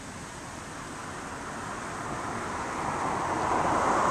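Rushing road-traffic noise that swells steadily louder, as of a vehicle drawing near.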